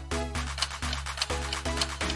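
Quiet electronic background music with short repeated notes, about three a second, over a steady bass line: a quiz countdown music bed running while the answer timer counts down.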